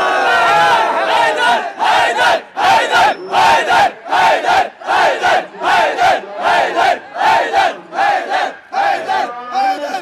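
A man calls out through a microphone. From about two seconds in, a crowd of men chants in unison, shouting a short phrase over and over in a steady beat of a little over two shouts a second, typical of a Shia matam chant.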